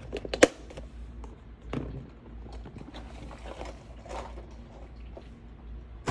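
A sharp plastic click about half a second in, then faint scattered knocks and scuffs of a plastic compartment organizer box being handled and cleared away.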